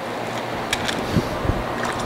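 Water running steadily from a tap as a burger-press paper sheet is wetted, with a few light knocks and clicks about a second in.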